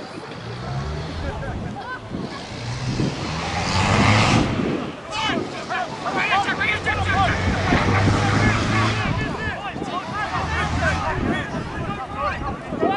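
Rugby spectators on the sideline shouting and calling out as play moves across the field, many voices overlapping. The noise swells about four seconds in and keeps up from about six to nine seconds, with a low steady drone underneath at times.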